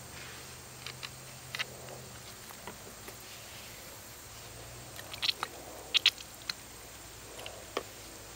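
Quiet background with a low steady hum and a few faint, scattered short clicks and ticks, a small cluster of them about five to six seconds in.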